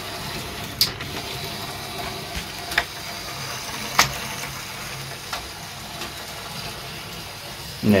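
LEGO Monorail 6399 train running along its track: the battery-powered monorail motor whirring steadily as its drive cog meshes with the toothed track, with a few sharp clicks, the strongest about halfway through. The train meets the station's switch pin and reverses direction.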